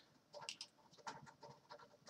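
Near silence: room tone with a few faint, scattered soft sounds.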